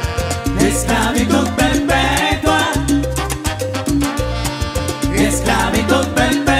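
Live Latin dance band playing: a sung lead vocal over a heavy bass line, keyboard, and timbales and conga keeping a steady beat.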